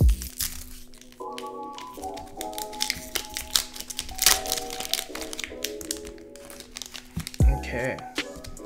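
A foil trading-card booster pack wrapper crinkling and crackling as it is handled and torn open, over steady background music. A low thump comes at the start and another near the end.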